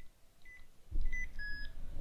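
Keypad beeps from a handheld payment terminal as a phone number is typed in: four short, high beeps about half a second apart, the last a little lower and longer. A low rumble of background noise comes in about a second in.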